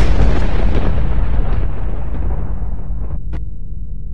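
A loud rushing, rumbling noise that fades away steadily over about three seconds, with a single short click near the end.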